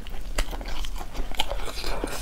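Close-miked eating sounds of a person chewing and biting braised pork leg: a run of short, irregular wet clicks and smacks.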